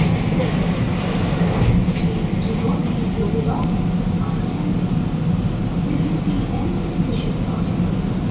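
Interior running noise of a Bombardier Movia C951 metro train as it leaves the station and runs into the tunnel: a steady rumble with a low hum.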